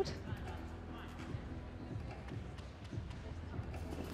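Quiet arena ambience with a steady low hum and faint music, and soft thuds of a gymnast's footsteps running along the runway toward a double-mini trampoline.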